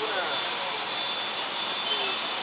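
Three-wheeled motorcycle taxi's engine running steadily as it moves past, with voices in the background.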